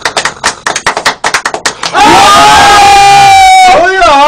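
Several men clapping their hands rapidly, then about halfway through they break into one long, very loud yell, held on a steady pitch.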